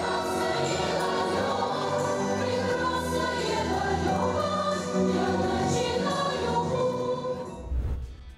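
Music with a choir of voices singing together, held notes sustained throughout, fading out near the end.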